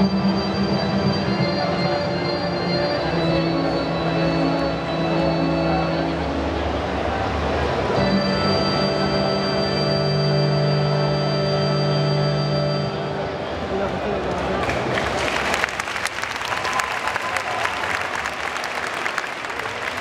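Electronic keyboard playing slow, long held chords that change every few seconds, stopping about two-thirds of the way through; the audience then applauds.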